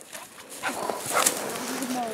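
Scattered crunching and rustling of footsteps through frozen low shrubs and patchy snow, with a short low voice sound near the end.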